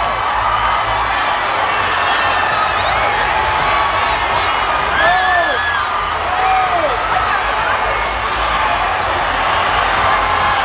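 A large audience cheering, many voices overlapping at a steady loud level, with a few shrill shouts about halfway through.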